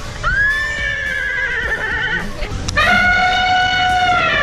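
Recorded zebra call played by a push-button sound panel on a play structure: a high, wavering whinny lasting about two seconds, then a second, steadier call starting about three seconds in.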